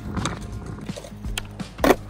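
Background music with a steady beat, and a sharp clack of a skateboard on concrete near the end.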